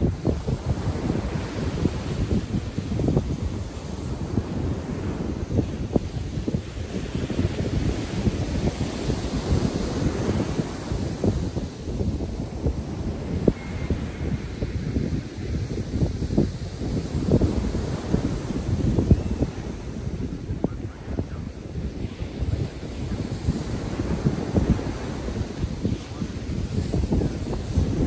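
Wind buffeting the microphone in uneven gusts, over the hiss of ocean surf breaking and washing up the beach, swelling and easing with each wave.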